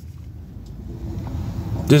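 Low steady rumble of a car heard from inside the cabin, with faint brief tones partway through.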